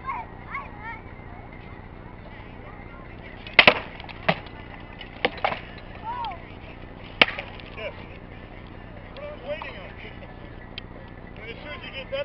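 Rattan swords striking shields, armour and each other in armoured sword sparring: about six sharp wooden cracks between three and a half and seven and a half seconds in, the first two in quick succession.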